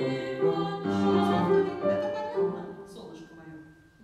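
A boy singing a classical song in a trained voice, accompanied by a grand piano. The sung phrase ends about two and a half seconds in and the piano fades away.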